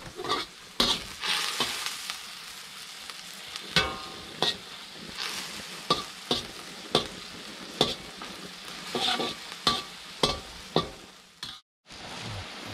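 Meat stir-frying in a steel wok: a steady sizzle under the scrape and clank of a long metal spatula against the wok every half second to second, one stroke ringing briefly. The sound cuts out for a moment near the end.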